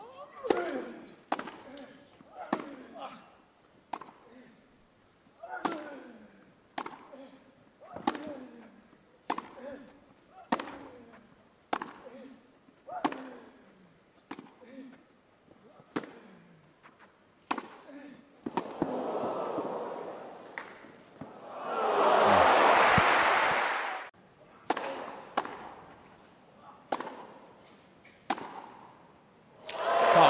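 Tennis rally on a grass court: racket strikes on the ball about once a second, some carrying a player's grunt. About 19 seconds in the crowd murmurs, then swells loudly for about two seconds and cuts off, and the strikes resume.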